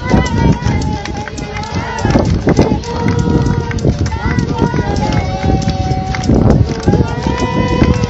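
Several people's raised voices calling out and exclaiming over one another in drawn-out cries, over a heavy low rumble with frequent knocks.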